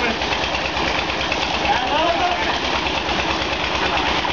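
An engine running steadily with a low, even chug of about a dozen beats a second, under the rush and splash of water pouring from a pipe into a pool. People's voices and shouts sound over it.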